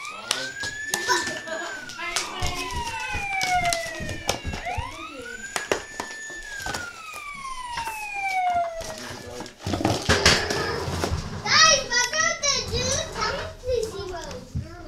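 A siren sound with two slow wails, each rising quickly, holding, then sliding down over about four seconds, followed near the end by a fast high warble. Knocks and clatter run through it.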